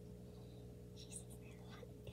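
Near silence: a faint steady low hum, with a brief soft whisper about a second in.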